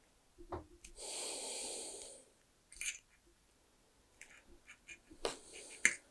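A person breathing out hard, a hissy breath about a second long starting about a second in, among small clicks and rustles of hands handling a cable, with a sharp click near the end.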